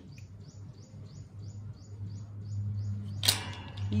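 A bird's rapid series of high chirps, about four a second, stopping a little past halfway, over a low steady hum. Near the end comes one short, sharp, high-pitched sound.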